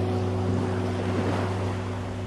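Background music holding a low sustained chord over a steady wash of ocean surf that swells slightly in the middle.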